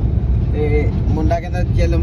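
Steady low rumble of a car heard from inside the cabin: engine and road noise.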